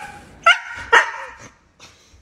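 A husky barking twice in quick succession, two short sharp barks about half a second apart, as it playfully lunges and mouths at a person's hand.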